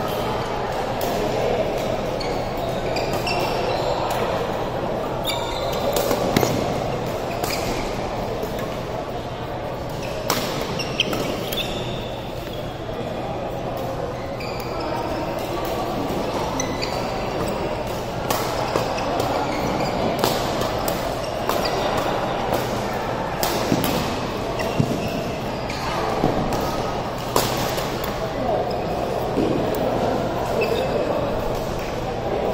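Badminton rackets hitting shuttlecocks in rallies on several courts: sharp, irregular smacks, some close and loud, over the steady chatter of many voices in a large hall.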